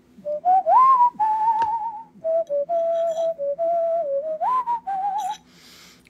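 A person whistling a short tune: one clear note that steps and glides up and down, some held notes wavering, and it stops about five seconds in.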